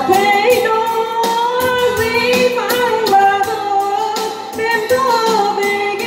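A woman singing a slow Vietnamese song into a microphone through a PA, accompanied by an electronic keyboard playing chords over a steady programmed drum beat.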